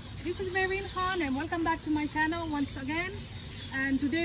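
A woman speaking in a run of syllables with a fairly high voice, over a faint steady hiss.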